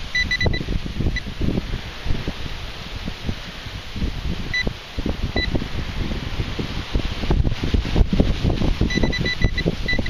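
A handheld Garrett pinpointer giving short, high beeps in fits and starts: a few at the beginning, single ones in the middle and a quick run near the end. The pinpointer is playing up. Heavy wind buffeting on the microphone runs underneath and is the loudest sound.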